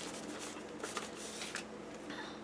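Faint rustling and sliding of a paper sticker sheet being handled over the planner pages, in a few short scrapes.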